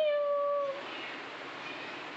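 A cat meowing once: one drawn-out meow that rises at the start, then holds a steady pitch for under a second.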